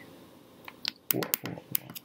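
A few small sharp clicks and brief soft vocal sounds, clustered in the second half after a quiet first second.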